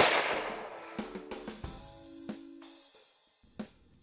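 A single centerfire bolt-action rifle shot right at the start, its report echoing away over about a second and a half.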